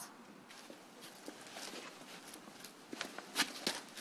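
Faint outdoor background with a few scattered footsteps and light knocks, a small cluster of them in the last second.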